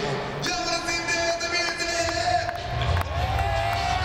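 Arena PA sound over crowd noise: a long held note for about two seconds, then music with a heavy bass beat comes in about halfway through.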